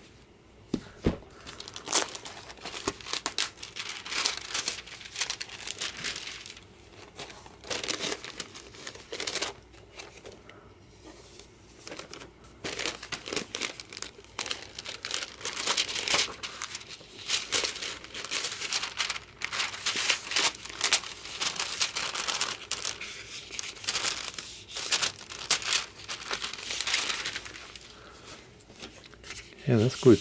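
Clear plastic sheets crinkling and rustling in irregular bursts as they are pulled out from between the pages and off the covers of a freshly glued hardcover book, with the book's pages and covers being handled.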